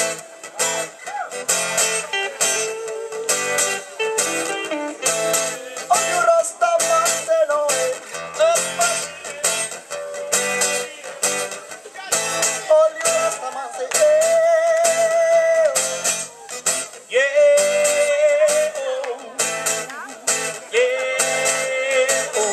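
Live folk band playing a song, with a strummed acoustic guitar and an electric guitar under a lead melody of long held, gently bending notes.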